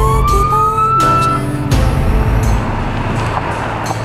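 Police siren giving one rising wail that climbs and stops about a second and a half in, followed by a loud rushing noise over background music.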